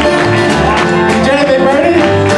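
A large acoustic band playing a country song live: many strummed acoustic guitars with mandolins, a fiddle, a bass guitar walking under them and a drum kit, with voices singing along.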